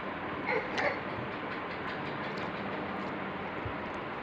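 Steady rumble and hiss of a moving vehicle, with two brief higher-pitched sounds about half a second and just under a second in.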